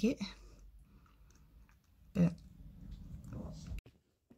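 Quiet room tone with a few faint clicks between brief words, cut off suddenly shortly before the end.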